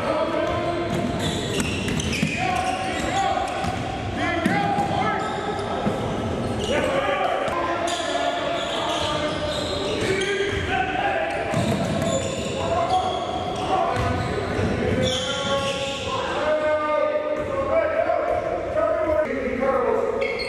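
Basketballs bouncing on a gym's hardwood floor, with players' overlapping chatter echoing in the large hall.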